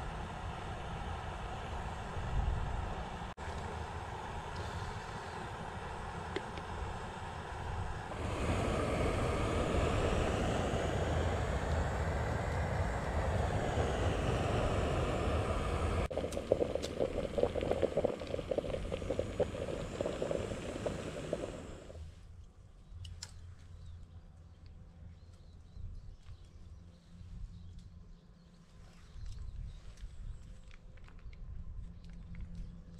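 Jetboil canister gas stove burner running with a steady hiss. It grows louder about eight seconds in and falls away to a faint background about twenty-two seconds in, leaving a few small clicks.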